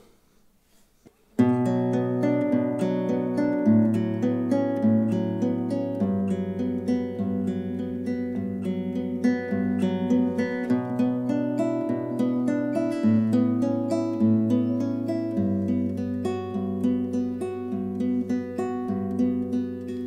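Nylon-string classical guitar fingerpicked in a PIMA arpeggio (thumb, index, middle, ring) through a B minor progression of Bm add11, A6/9 and Gmaj7. The bass note changes every few seconds. It starts about a second and a half in.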